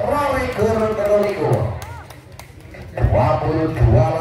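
A man's voice speaking, the match commentary, with a short lull about two seconds in that holds a few sharp clicks.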